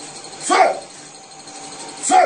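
A single short yelp-like cry about half a second in, its pitch rising and then falling. It is one of a series of matching cries that repeat about every second and a half.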